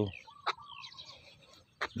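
Faint bird calls: a few short falling chirps and a brief held note in the first second, with a sharp click about half a second in.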